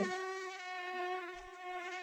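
Mosquito in flight, a steady, high whining buzz with a slight wobble in pitch.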